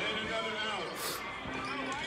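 Several people talking in a gym's reverberant hall, with a single ball bounce on the court about one and a half seconds in.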